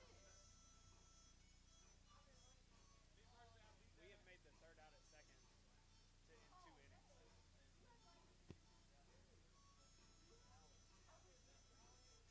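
Near silence, with faint distant voices and a single brief click about two-thirds of the way through.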